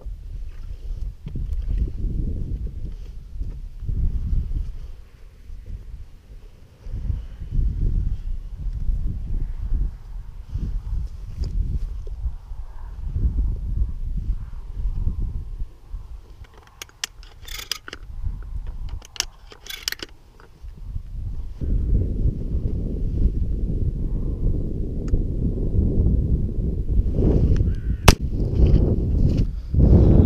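Wind buffeting the microphone in gusts, with a short run of loud quacks from a duck call at about 17 to 20 seconds, and a single sharp, loud crack near the end.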